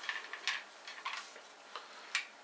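A few light metal clicks as a muzzle brake is handled against an AK rifle's barrel. The clearest comes about half a second in.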